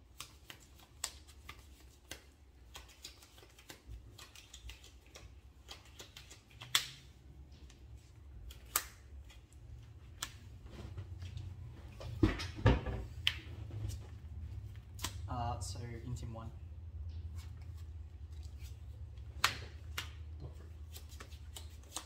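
Sleeved playing cards being shuffled and handled, with many short sharp clicks and snaps as cards are riffled and laid down on a playmat, loudest about halfway through. A low hum runs underneath through the middle stretch.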